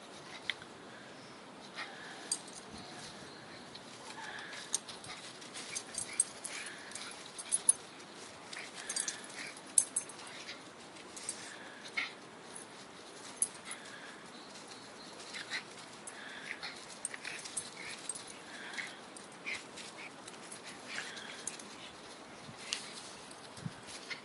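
Two Brussels Griffon dogs play-fighting, with short dog noises and scattered sharp clicks and scuffles of paws on leaf litter throughout.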